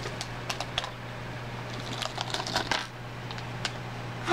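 A blind-bag packet crinkling as it is opened and emptied, with small plastic charms with metal clasps clicking and tapping onto a wooden table in scattered bursts.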